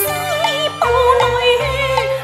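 Cantonese opera accompaniment playing a passage between sung lines: a melody sliding and bending between notes over a stepping bass line, with a brief cymbal-like splash right at the start.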